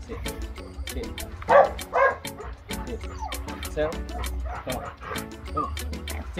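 Pit bull dogs yipping and whimpering, with two loud barks about one and a half and two seconds in, over background music with a steady beat.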